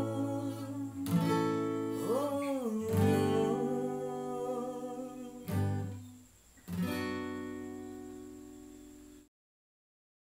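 Acoustic guitar strummed chords with a man singing the closing line of a Sinhala song. A final strum about seven seconds in rings out and fades. The sound cuts off abruptly shortly before the end.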